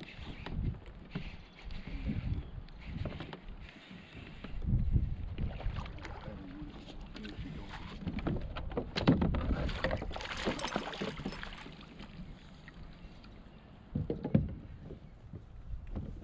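Irregular knocks and bumps on a plastic fishing kayak, with the sound of water moving against it. A louder, hissier stretch comes about nine to eleven seconds in.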